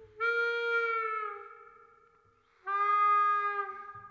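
Harmonica playing two long held notes. The first bends slightly down before it fades, and the second, a little lower, comes in about two and a half seconds later.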